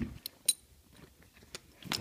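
Handling of a yellow waterproof vinyl saddlebag: a few small clicks and taps, with one sharper click about half a second in.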